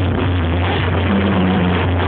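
A Mexican brass banda playing live and loud: massed trumpets and horns over a steady low bass line from the tuba.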